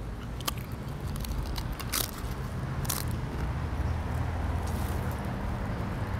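A person biting into and crunching a crisp, extremely hot tortilla-style chip, a few sharp crunches in the first three seconds, over a steady low rumble.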